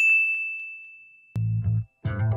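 A single high, clear ding sound effect that rings and fades away over about a second and a half. Deep bass music starts near the end.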